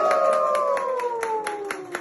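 People cheering with a long drawn-out 'woooo' that slides down in pitch and fades away, over steady clapping at about five claps a second.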